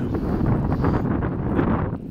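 Wind buffeting the phone's microphone: a dense, steady low rumble with no distinct events.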